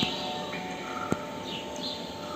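Bird chirps from a film's soundtrack playing over theater speakers, above faint held musical tones, with a single sharp click about a second in.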